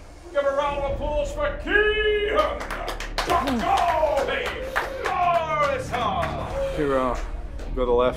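Background music with a man's voice speaking and calling out over it, and a quick run of sharp taps about three seconds in.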